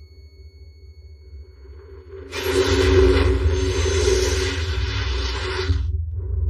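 Film soundtrack: a low rumbling drone with a few steady held tones, then a loud rushing sound effect that swells in suddenly about two seconds in and cuts off abruptly just before the end.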